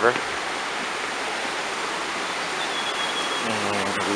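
Mountain river rushing over rocks below a footbridge: a steady, even rush of water.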